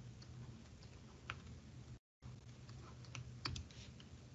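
Faint taps and clicks of a stylus on a tablet screen during handwriting, one about a second in and a cluster near the end, over a low steady hum.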